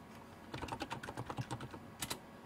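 Computer keyboard typing: a quick run of keystrokes starting about half a second in, used to enter a stock name into a search box.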